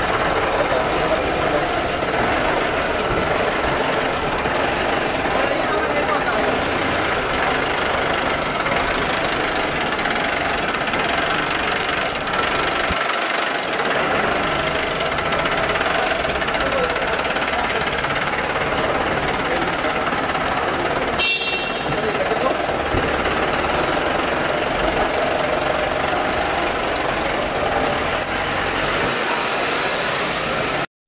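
A Jeep's engine running under the overlapping chatter of a crowd, in an underground car park.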